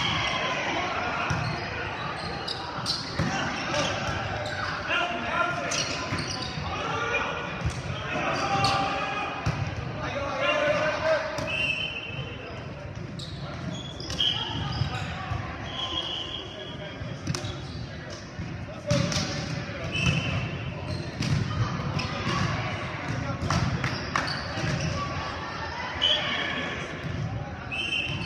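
Volleyball game in a large echoing gym: players' voices calling and talking indistinctly, with sharp smacks of the volleyball being hit or bounced and short high squeaks of sneakers on the hardwood floor.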